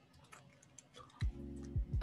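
Faint, scattered computer keyboard and mouse clicks while a file is named and saved, followed about a second in by a low steady hum with a couple of soft thumps.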